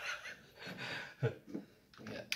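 A man's soft, breathy laughter trailing off into a few short exhaled breaths.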